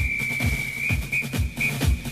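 Electronic intro music with a steady kick-drum beat of about three beats a second, under a high held whistle-like tone that stops just before the end.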